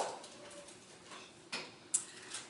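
A pause in a woman's spoken talk: the end of her last word dies away into faint room tone, then a short breath-like noise about a second and a half in and a brief sharp click just before the end.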